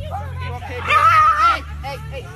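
A dog yelps and cries out in one loud, high, wavering squeal of about half a second or more, just before a second in, in the middle of a dog fight, amid people's raised voices.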